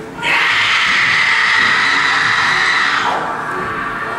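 A long, loud, harsh scream lasting about three seconds, its pitch falling away at the end.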